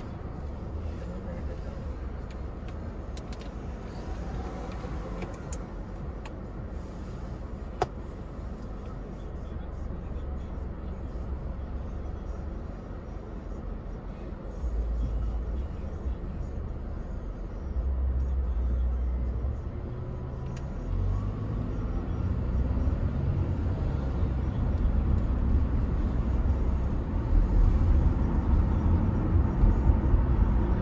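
Car road and engine noise heard from inside the car: a low rumble, quieter at first, that grows louder through the second half as the car picks up speed. A single sharp click sounds about eight seconds in.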